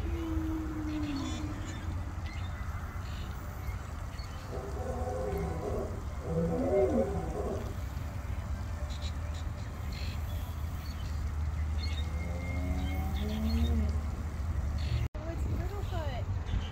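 Recorded dinosaur calls played from the exhibit's loudspeakers beside the life-size sauropod models. There are three low calls: a falling one at the start, a longer one in the middle and a wavering one near the end, over a steady low rumble.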